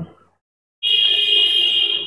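A loud, shrill, steady alarm-like tone that starts about a second in and lasts about a second and a half.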